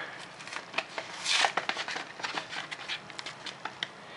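Plastic blister pack with a cardboard backing being handled and pried open by hand: a run of sharp plastic crackles and clicks, with a louder rustling burst about a second and a half in.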